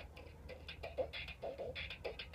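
Bop It Extreme 2 handheld toy playing its electronic beat music faintly through its small speaker, with scattered clicks and short tones, while running on low batteries.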